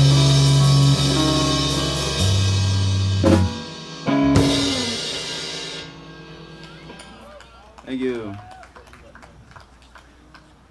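A live rock band (drum kit, electric and acoustic guitars, keyboard) ending a song: a held chord, then two full-band hits about a second apart that ring out and fade by about six seconds in. A short voice is heard near the end.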